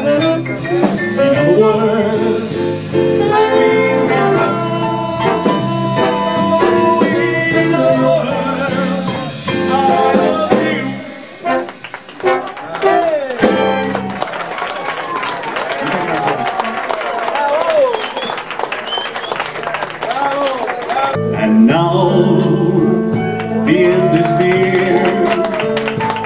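A big band's brass, saxophones and drum kit play the close of a swing number, which ends about eleven seconds in. Audience applause and cheering follow for several seconds, and near the end the band strikes up the opening of the next tune.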